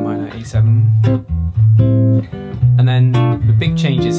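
Gibson archtop jazz guitar played clean, comping a minor ii–V–i progression (A minor 7, B minor 7 flat 5, E7 flat 9) as chords struck about once a second, each with a deep bass note ringing under it.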